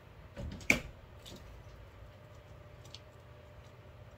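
Light handling noises from craft tools: one sharp tap a little under a second in, then a few faint clicks and ticks.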